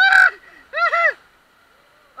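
Two short, loud shouts from people riding inner tubes through rapids, one at the start and one about a second in, each rising and then falling in pitch.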